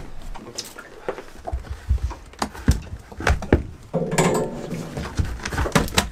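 Irregular knocks, clicks and low thumps of fishing gear being handled on a small boat, with a brief voice about four seconds in.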